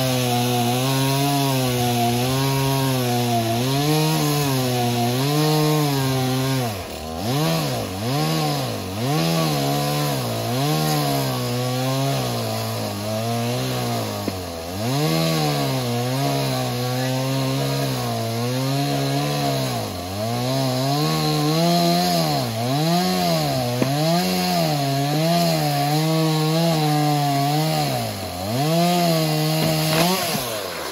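Gasoline chainsaw running at high throttle as it cuts through a fallen log, its pitch sagging and recovering as the chain loads up in the wood. The throttle eases off briefly several times, about seven seconds in, around twenty seconds and near the end, so the engine note dips and climbs again.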